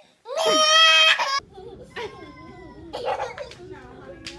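A baby's sudden loud, high-pitched cry, lasting about a second and cut off abruptly, followed by quieter voices.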